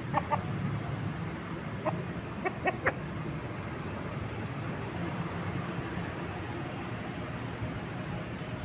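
Caged gamecock rooster clucking in short calls: two just after the start, then a quick run of three or four about two to three seconds in, over a steady low background hum.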